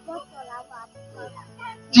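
A dog barking faintly several times, short yapping calls, over a low steady hum.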